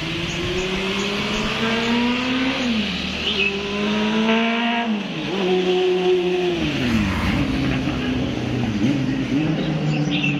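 Street traffic: a motor vehicle engine climbing in pitch as it accelerates, then dropping back, several times over, as vehicles pass along the road.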